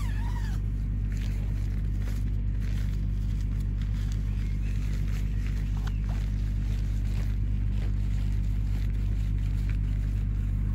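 Nylon dome-tent fly handled and its door zip pulled open, faint clicks and scrapes under a steady low rumble. A short rising-and-falling cry comes at the very start.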